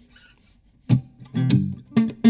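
Acoustic guitar being strummed: after a near-quiet first second, a few chord strums about half a second apart open the song.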